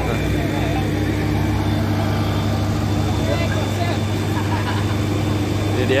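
A fire truck's engine idling: a steady low hum that holds level throughout, with scattered voices of people standing nearby.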